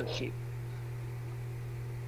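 The last words of a man's speech, then a steady low electrical hum with faint hiss underneath: mains-type hum on the call audio.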